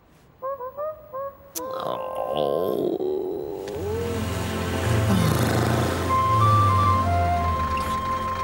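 Cartoon soundtrack: a few short honk-like pitched tones, then music with low sustained bass notes starting about three and a half seconds in.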